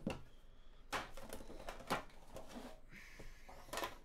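A few light knocks and clicks of a card box being handled and set against the tabletop, about one a second, with quiet rustling between them.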